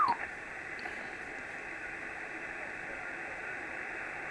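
Kenwood TS-480HX HF transceiver receiving in upper sideband, giving a steady hiss of band noise from its speaker. At the very start there is a short falling whistle as the tuning dial sweeps across a signal.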